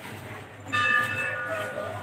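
A bell struck once, a little under a second in, its ringing tones fading away over about a second.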